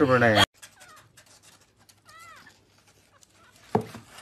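A young kitten mewing once, a short high arched call about two seconds in. A single loud thump comes near the end.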